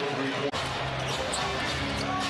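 Basketball game sound from the arena: a basketball bouncing on the hardwood court over crowd noise, with arena music playing. The sound drops out suddenly for an instant about half a second in, at an edit cut.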